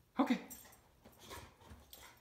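A boxer dog making a few brief, faint vocal sounds while it plays with a chew toy.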